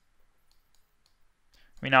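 A few faint, scattered computer mouse clicks over quiet room tone, then a man's voice begins near the end.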